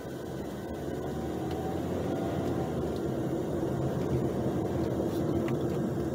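Car engine heard from inside the cabin, accelerating under a short burst of throttle. It grows louder over the first two seconds and then holds steady.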